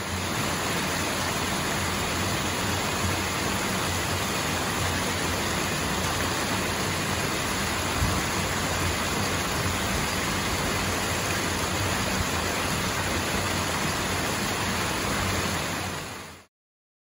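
Small waterfall pouring over a rock ledge into a pool: steady rushing of falling water.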